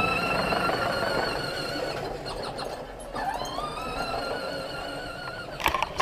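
Battery-powered John Deere ride-on toy tractor's electric drive motor whining steadily as it drives, fading about two seconds in and then rising in pitch again just after three seconds as it picks up speed.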